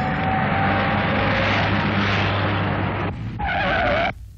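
A car driving fast with a steady rush of engine and road noise, then a wavering tyre screech near the end as it brakes hard to a stop.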